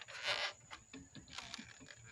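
Hands handling the plastic bezel of a solar panel: a brief rustling scrape, then a scatter of light clicks and taps from fingers on the frame and glass.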